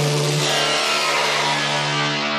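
Techno track in a breakdown with no drums: a held synth chord over a steady sustained bass note, the treble slowly dulling as a filter closes down.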